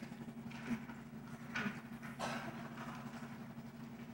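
Quiet pause in an auditorium: a steady low hum with a few brief rustles and shuffles.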